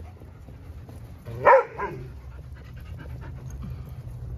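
A dog barks once, a short sharp bark about one and a half seconds in, with a smaller second yelp right after it.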